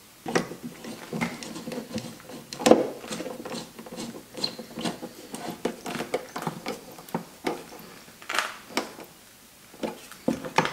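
Irregular plastic clicks, knocks and rustling as wiring is tucked into a Jeep tail light opening and the plastic tail light housing is pushed back into the body panel. The loudest knock comes a little under a third of the way in, and it goes quieter near the end.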